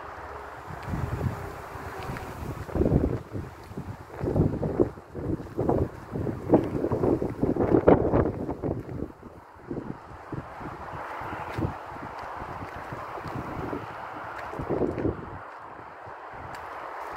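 Wind buffeting a phone's microphone, in irregular rumbling gusts that are strongest in the first half and settle into a steadier rush later on.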